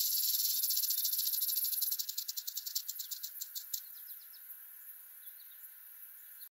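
Rattlesnake shaking its tail rattle: a steady high buzz that, about two seconds in, breaks into separate pulses, slows and fades out a couple of seconds later. The rattling is the snake's defensive warning.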